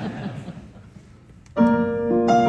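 Steinway grand piano: a fading murmur dies away, then about one and a half seconds in a full chord is struck and held ringing. It opens the song.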